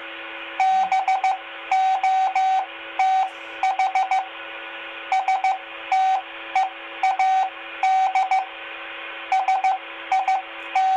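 Morse code (CW) practice sent at about 12 words per minute over a 2-meter FM amateur repeater and heard through a handheld transceiver's speaker: a single steady beep keyed into dots and dashes, over a faint constant hum and hiss.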